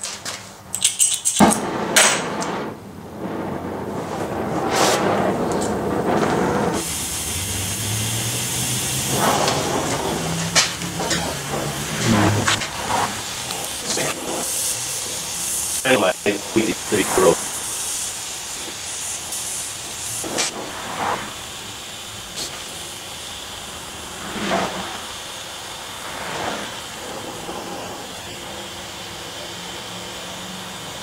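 Gas torch flame hissing steadily as it heats a steel bar clamped in a vise, with a cluster of sharp knocks about halfway through.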